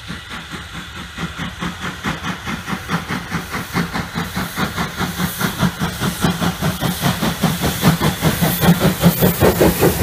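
Steam locomotive, LSWR T9 class No. 30120, working a train past at close range: a steady rhythm of exhaust chuffs over steam hissing from around its cylinders, growing louder as it draws level.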